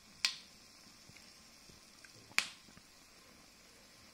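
Homa fire crackling: two sharp pops from the burning fuel in a square metal fire pit, about two seconds apart, with a couple of faint ticks between.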